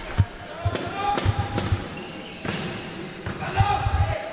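Volleyball rally on an indoor court: a run of sharp thuds from the ball being struck and players' feet landing, with shouts from players and crowd.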